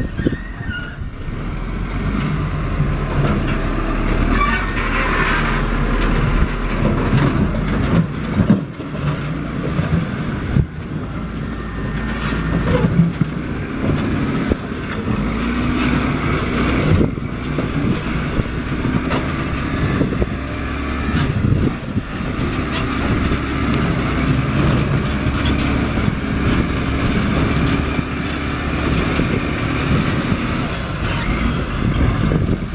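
Diesel engine of a wheel loader running under load as its bucket shoves over a cinder-block wall, its pitch and level rising and falling with the work. A few sharp knocks of blocks crashing stand out.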